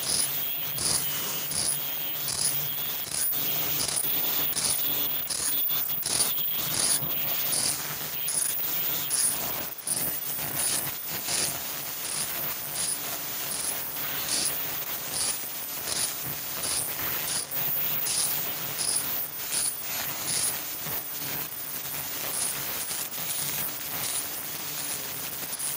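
Fully automatic servo-driven KF94 fish-shaped mask production line running at production speed: a steady mechanical hum with a regular high-pitched pulse about twice a second, in step with an output of around 120 masks a minute.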